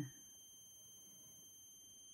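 Near silence: room tone with a faint, steady, high-pitched electronic whine made of a few pure tones.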